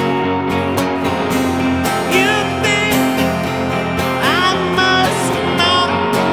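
Live indie-rock band playing, led by strummed acoustic and electric guitars with sustained notes, and high notes that swoop upward about two and four seconds in.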